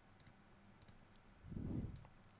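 Faint computer mouse clicks, a few quick ones in the first second, then a short, louder low sound near the end.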